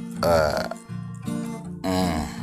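Acoustic guitar picked softly under a man's voice making two short wordless vocal sounds, one just after the start and one near the end.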